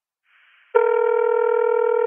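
Voicemail beep: a single steady electronic tone that starts about three quarters of a second in, just after a brief faint hiss, and holds at one pitch.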